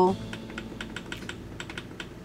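Rapid light clicking of the push buttons on a dashboard rear-view camera monitor being pressed again and again, about six to eight clicks a second, stepping through its settings.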